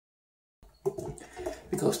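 A man's voice talking, starting about half a second in after a moment of silence.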